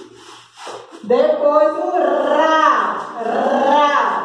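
A woman's voice sounding out long, drawn-out syllables with gliding pitch, starting about a second in after a quiet moment.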